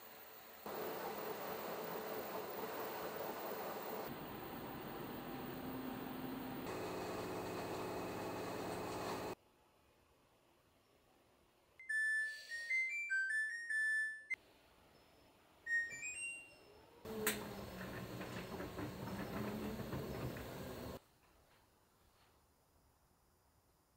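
LG WashTower washer-dryer playing its short end-of-cycle melody of quick electronic beeps, signalling that the wash is finished, with a few more beeps shortly after. Before and after it, a steady whirring noise that cuts off suddenly.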